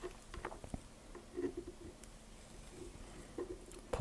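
Faint small clicks and handling noise of a screwdriver bit and a rifle's front sight being fitted onto the barrel, with a soft scuffle about a second and a half in.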